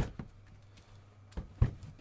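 Sealed trading-card boxes handled by hand on a table, with a few short knocks. The loudest knock comes about a second and a half in.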